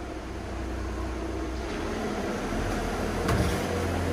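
Steady low hum and rumble of an underground car park, slowly growing louder, with a single knock about three seconds in as a swing door to the lift lobby is pushed open.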